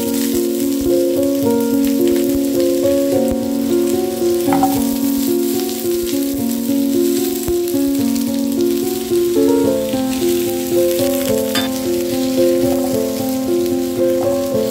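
Potato and carrot chunks sizzling as they fry in hot oil in a nonstick pan. Background music with steadily stepping notes plays over it throughout.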